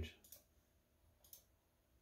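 Near silence with two faint, short clicks about a second apart: a computer mouse being clicked.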